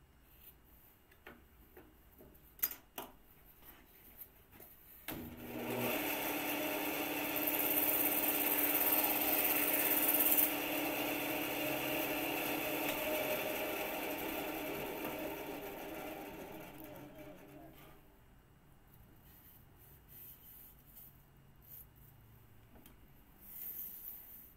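Electric power saw switched on about five seconds in: the motor comes up to speed, cuts through a piece for about three seconds, then winds down slowly over several seconds after the cut. A few sharp knocks of handling come before it starts.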